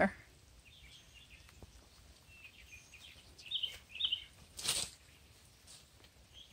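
Quiet outdoor background with faint birds chirping, a few short calls through the middle. A little before the end comes one brief, sharp rush of noise.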